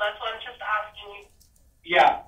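Speech heard over a telephone line, thin and cut off in the treble: a recorded phone call played aloud, with a short pause just past halfway.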